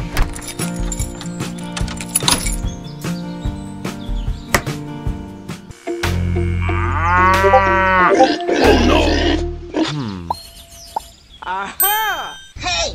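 Background music for the first half. About six seconds in, a loud cow moo sound effect is heard, followed by a rougher, noisier sound, with a short cartoon-style effect near the end.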